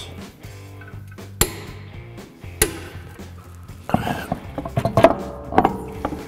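Click-type torque wrench clicking twice, about a second apart, as the rear axle nut reaches its 200 foot-pound torque, over steady background music. Near the end, knocks and clinks of the alloy wheel being set onto the hub.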